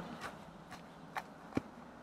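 A narrow wooden board being pressed and tapped down into loose garden soil to firm the bottom of a seed furrow, giving a few soft, dull thuds, the clearest two a little past halfway.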